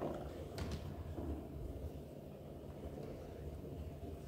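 Quiet room tone in a large hall: a steady low hum with a single faint click about half a second in.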